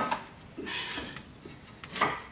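A sharp metal clunk at the very start, then rubbing and a few light clicks as a new front CV axle's splined shaft is pushed and worked into the front wheel hub of a Subaru WRX/STI, seating into the hub splines.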